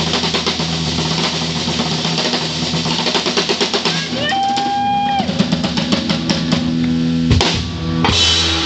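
Live rock band playing: electric guitars, bass guitar and a drum kit. About halfway through, a single high note slides up and is held for about a second, and a strong drum hit lands near the end.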